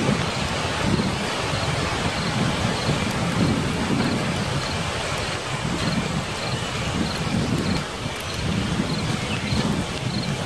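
Steady rain-like rushing with low rolling rumbles that swell and fade every second or so, as of a thunderstorm, and a faint high chirp repeating a little more than once a second.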